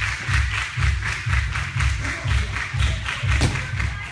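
Music with a heavy, fast bass beat and sharp percussive hits on the beat.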